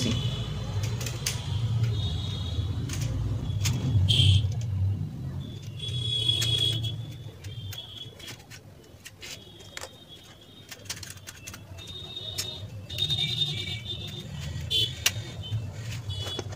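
Scattered small clicks and taps of a screwdriver and wire ends being worked into the screw terminal block of a switch-mode power supply, over a low background hum that fades about halfway through.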